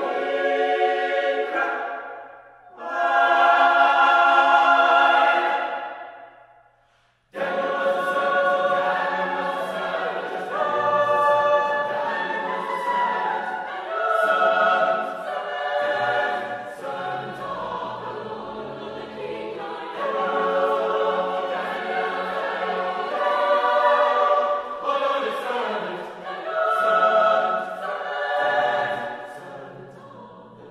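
Mixed choir singing a spiritual in parts: two held chords in the first six seconds, a brief break about seven seconds in, then a continuous, rhythmic passage over a low bass line.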